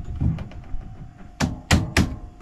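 A Corian fridge-lid frame being set into its opening in a wooden countertop: a few dull thumps, then three sharp knocks in the second half as it is pressed into place.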